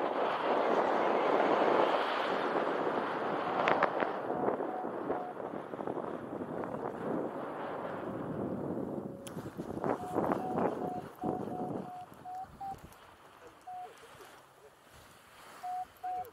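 Wind rushing over the microphone of a paraglider pilot's harness-mounted camera on final approach, loud at first and dying away over the first half as the glider slows and lands. After a few knocks around touchdown comes a run of short, even-pitched beeps, a couple more near the end.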